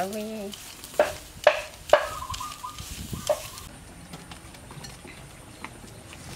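Hands tossing shredded vegetables in dressing in a large metal bowl: wet stirring and squelching, with a few sharp clinks against the bowl in the first few seconds.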